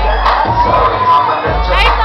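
A crowd cheering and shouting over loud hip-hop music with a heavy bass beat, with a rising whoop near the end.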